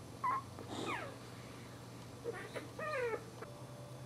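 Newborn Boxer puppies giving several short, high, mewing cries that fall in pitch: a brief one at the start, another about a second in, and a cluster of two or three near the three-second mark.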